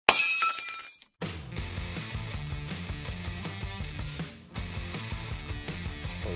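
A glass-shattering sound effect, a loud crash with ringing shards, fills the first second; after a brief gap, background music with a steady beat starts and runs on.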